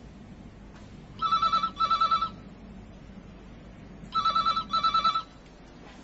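Desk telephone ringing with two double rings (ring-ring, pause, ring-ring) about three seconds apart, each ring a fast warbling tone.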